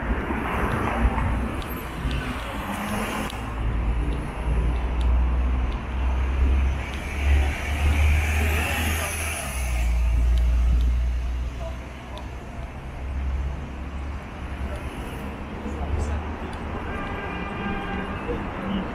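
City street ambience: car traffic running steadily along a busy avenue with a deep, continuous rumble, and passersby talking nearby.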